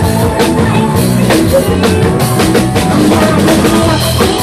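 Amplified live band music led by a drum kit, with regular drum strikes over sustained keyboard and instrument notes.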